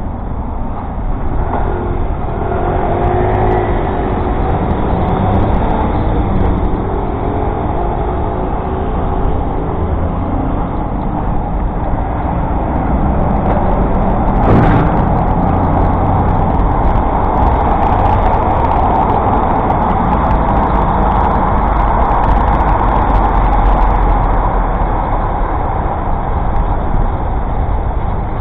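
Steady road-traffic noise from cars, buses and lorries beside a moving bicycle, with a heavy low rumble throughout. There are some wavering engine tones a few seconds in and a single sharp knock about halfway through.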